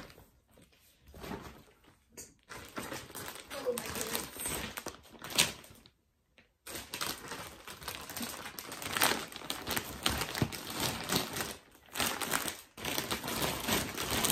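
Clear plastic bag crinkling and rustling as it is handled and stuffed animals are packed into it, an irregular crackle with a brief break just past the middle.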